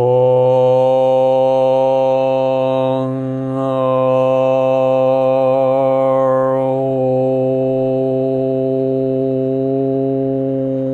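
A man chanting a mantra on one long, steady low note held through without a break. The vowel changes about three seconds in and glides to another a little before seven seconds.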